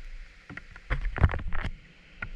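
A quick, irregular cluster of knocks and rustles, loudest just past the middle, over a steady hiss of rain.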